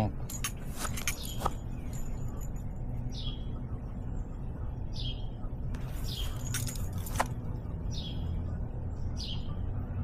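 A bird repeating a short, high, falling chirp about every second and a half, over a steady low background rumble, with a few clicks and rattles near the start and again around the middle.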